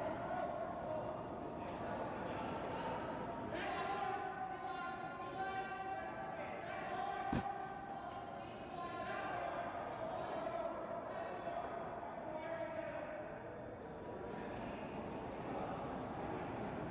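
Players' voices and chatter echoing in a curling rink, with a single sharp knock about seven seconds in.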